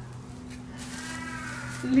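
A woman crying with emotion: a faint, wavering whimper begins about a second in and swells into a loud tearful voice at the very end, over a steady low hum.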